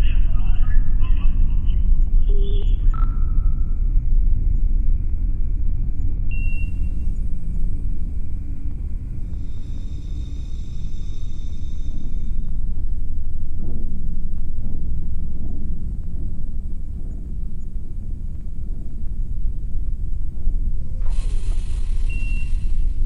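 Deep, continuous rumble under a space radio transmission: thin, narrow-band voice chatter in the first few seconds, then short electronic beeps and a steady radio hiss with faint tones.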